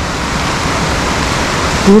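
Steady rushing of a small river running high and fast in full flow, with whitewater.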